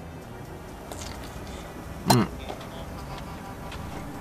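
A man chewing a mouthful of hot dog with faint soft clicks, and one short appreciative "mm" about two seconds in, over quiet background music and a steady low hum.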